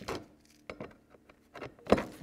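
A few faint, scattered clicks and light knocks as the scarifying cartridge and its bolt are handled and seated in the plastic housing of a cordless lawn scarifier.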